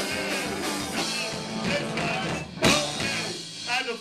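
Live rock band of electric guitar, bass guitar and drum kit playing loudly, with a sharp loud hit a little past halfway, after which the music thins out and voices are heard.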